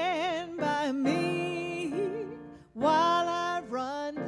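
A woman singing a gospel spiritual solo, with wide vibrato on long held notes in two phrases, the second beginning near three seconds in, over piano accompaniment.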